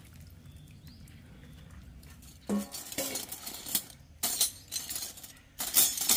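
Stainless steel spoons and forks clinking against one another as a hand sorts through a pile of them in a plastic colander. The clinks start about two and a half seconds in with a short dull knock, then come scattered and irregular, loudest near the end.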